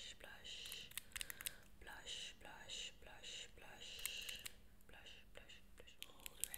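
Close, soft whispering in short repeated hissy bursts, with a few light clicks about a second in and again around four seconds in.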